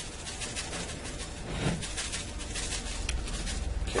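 Dried rosemary shaken from a large plastic spice jar onto a roast, a quick, irregular run of light rattles and ticks.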